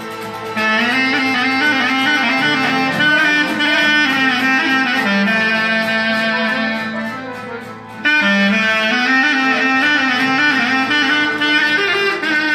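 Clarinet playing a fast, ornamented Greek folk melody over a violin accompaniment. The clarinet comes in about half a second in, fades away around seven seconds in, and comes back sharply at eight seconds.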